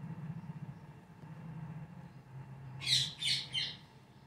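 Rose-ringed parakeet giving three quick, harsh screeches close together, about three seconds in, over a faint low hum.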